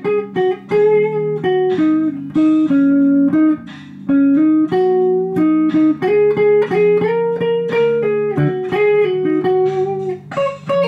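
Electric guitar playing a slow blues lead of single plucked notes from the E-flat minor pentatonic scale, each note held about half a second to a second. Steady held backing chords sound underneath, and the lead drops out briefly about four seconds in.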